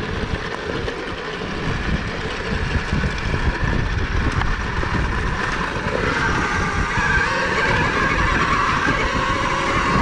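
2023 KTM Freeride E-XC electric dirt bike ridden over a bumpy dirt trail: a steady rumble and rattle of chassis, chain and tyres over rough ground, with many small knocks. A high whine from the electric motor and chain drive gets louder about six seconds in, as the bike picks up power.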